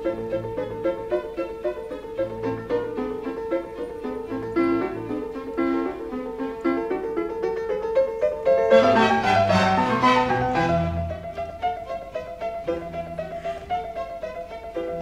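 Piano and string orchestra playing a D minor piano concerto, with quick running notes over a steady pulse. About eight and a half seconds in, the music grows louder and fuller, with an upward run and strong bass notes.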